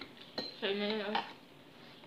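A single light clink of tableware, a plate or spoon knocked during a meal, with a short high ring about half a second in. A brief voice sound follows.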